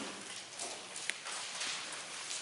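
Bible pages being leafed through and rustling, with light clicks and one sharp tick about a second in.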